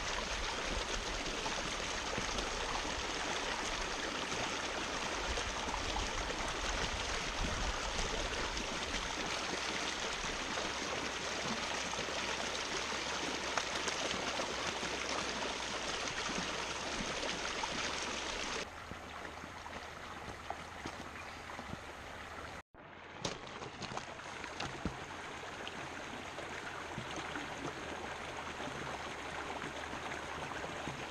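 Shallow river water rushing steadily over rocks in small rapids, close to the microphone. About two-thirds through the sound drops in level, then cuts out for a moment and carries on more quietly.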